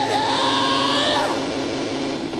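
Film sound effects: a loud hissing rush with wailing tones that slide up and down, fading about a second in and leaving a steady low tone.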